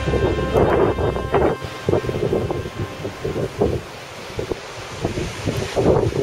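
Wind buffeting the microphone in irregular gusts, over the wash of ocean surf.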